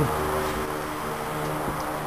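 A steady low hum with a faint hiss over it, like a running fan or electrical equipment.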